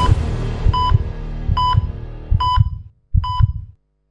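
Heart-monitor-style electronic beeps, five of them a little under a second apart, each paired with a low heartbeat thump, over the fading tail of a TV programme's theme music; the sound cuts off suddenly near the end.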